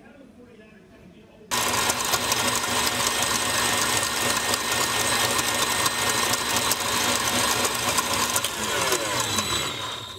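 Electric stand mixer running at high speed, its wire whisk whipping protein fluff in a stainless steel bowl. It starts suddenly about a second and a half in, runs steadily, and winds down near the end.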